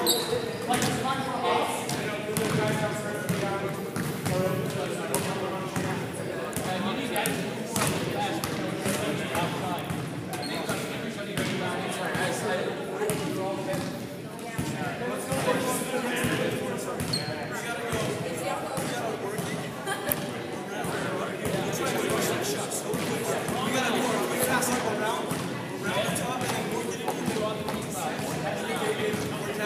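Basketballs bouncing on a hardwood gym floor, with indistinct chatter from many voices throughout.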